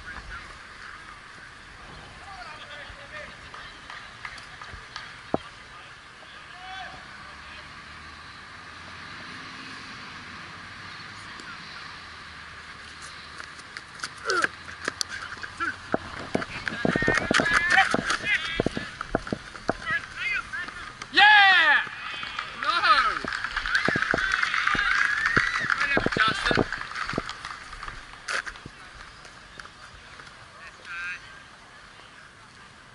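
Players' shouted calls on a cricket field, picked up on an umpire's body-worn camera microphone. Little is heard for the first half, then from about halfway there are many clicks and knocks with loud shouts, the loudest a little over two thirds of the way in.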